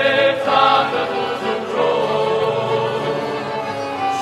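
Male vocal group singing in harmony, with two accordions and a guitar playing along.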